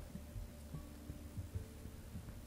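Faint steady low hum with soft, scattered low bumps of hands working t-shirt yarn into a macramé knot against a wooden tabletop.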